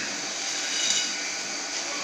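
Steady rushing hiss from a pan of water at a rolling boil over a lit gas burner.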